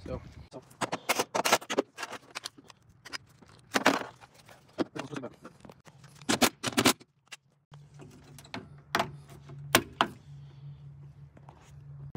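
Sharp clicks, knocks and rattles of hands working plastic wiring connectors and metal parts in a bare car door, several irregular clusters a second or two apart. A faint steady hum runs under the second half.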